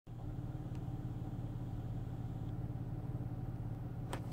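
Steady low hum of a running car, heard from inside its cabin.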